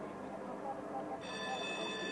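Faint outdoor background with distant voices. About a second in, a steady high electronic whine made of several tones held together starts abruptly.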